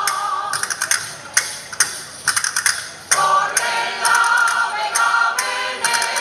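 Mixed choir singing a Cantabrian folk song in several parts, with sharp percussive strikes keeping a beat about twice a second. The held chords thin out in the middle and the full choir comes back in about three seconds in.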